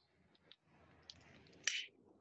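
A hand-pump spray bottle giving one short hissing spray about three-quarters of the way in, used to purify the room, with faint clicks and rustling before it.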